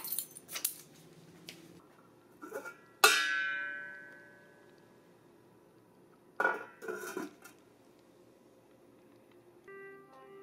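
Stainless steel pot and lid clanging in a kitchen sink: one sharp metallic clang about three seconds in that rings on and fades over a second or so, then two shorter clattering knocks a few seconds later.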